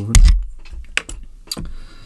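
Handling noises on a workbench: a heavy thump just after the start, then a few sharp clicks as the plastic half-shell of a hair straightener is moved aside.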